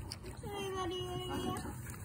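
Australian shepherd dog giving one long, steady whine, excited over a pumpkin it is trying to chew.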